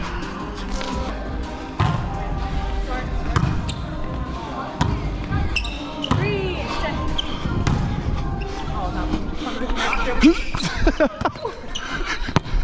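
A volleyball struck and bouncing on a hardwood gym floor: sharp, echoing impacts at irregular intervals, with players' voices carrying in the background of the large hall.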